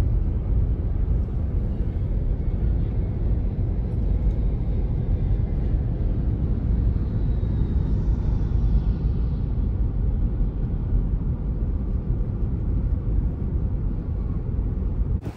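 Road and engine noise heard inside a car's cabin while driving at a steady speed: a steady low rumble. A faint high whine glides through the middle.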